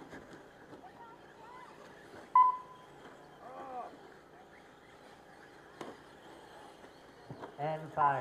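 A single short, loud electronic beep about two and a half seconds in, over a low background with faint distant voices.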